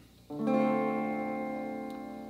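Stratocaster-style electric guitar: a D minor seven chord strummed once, about a quarter second in, then left to ring and slowly fade.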